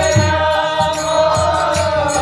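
Devotional kirtan: a harmonium playing sustained, held chords, with chanting and a regular beat kept by hand-clapping.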